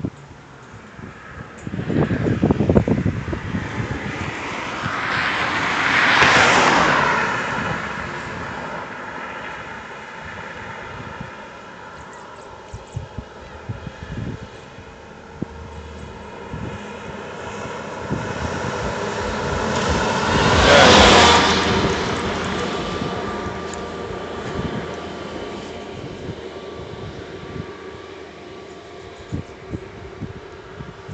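Cars passing on the road: engine and tyre noise swells and fades twice, about six seconds in and again, louder, about twenty-one seconds in. A brief low rumble comes a couple of seconds in.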